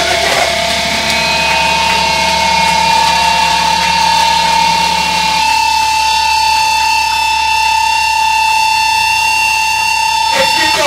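Feedback from the stage amplification, most likely a guitar amp left ringing: one steady high tone with fainter steady overtones above it. A lower hum under it drops out about halfway through, and the tone keeps on.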